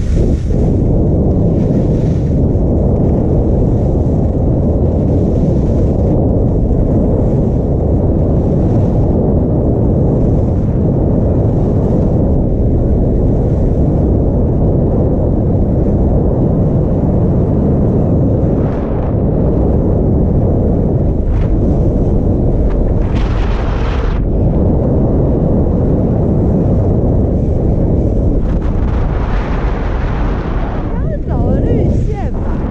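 Heavy wind rumble buffeting a GoPro Hero5 Black's microphone during a fast ski run. A few short hisses of skis scraping the snow break through, the longest near the end as the skier slows.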